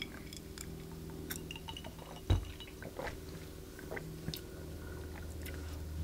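A person sipping a cocktail and tasting it, with faint small mouth and lip sounds and one dull thump about two seconds in, over a low steady hum.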